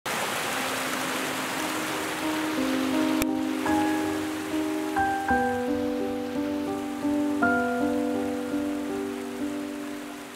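Solo piano playing slow, sustained notes with heavy reverb. A rain-like hiss under the opening notes cuts off with a click about three seconds in, leaving the piano alone.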